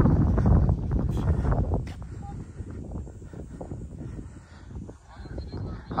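Wind buffeting the camera's microphone as a low rumble, loudest in the first two seconds and then easing off.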